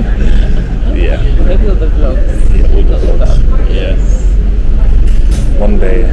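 Conversational speech over a steady low rumble.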